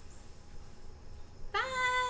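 Quiet room tone, then about one and a half seconds in a loud, high, drawn-out vocal call that slides up and then holds a single pitch.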